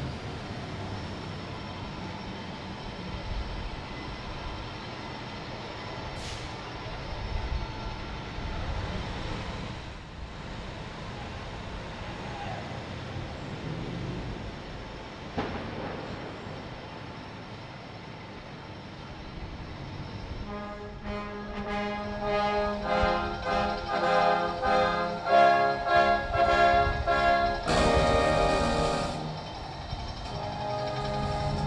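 A brass band starts playing about two-thirds of the way in, its chords pulsing in a steady march beat and becoming the loudest sound. Before it there is only a steady outdoor background hum.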